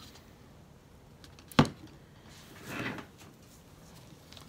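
A single sharp click about one and a half seconds in, like a hard plastic object knocking or being set down on a tabletop. About a second later comes a short, soft rustling swish.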